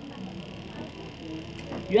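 A brief pause in a woman's speech: low room noise with a faint, low murmur of voice. Her speech starts again at the very end.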